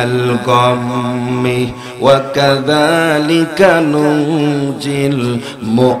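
A man's voice chanting in a melodic, sung style, holding long wavering notes with brief breaks between phrases, amplified through a public-address microphone.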